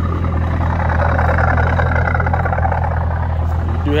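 A vehicle engine idling, a steady low hum throughout, with a soft rustling noise over it for a couple of seconds in the middle.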